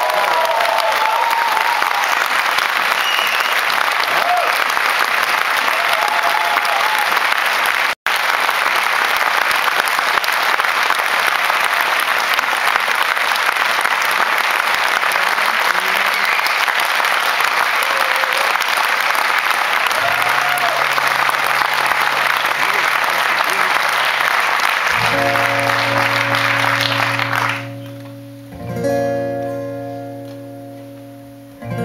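Concert audience applauding, with a momentary cut-out about eight seconds in. Near the end, acoustic guitar chords come in under the applause; when the applause stops, two chords are struck and left ringing.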